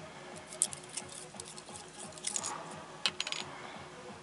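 Small clicks and taps of lens parts knocking together as a glass lens element and a metal lens barrel are handled and fitted by hand. The clicks come in scattered groups, the sharpest about three seconds in.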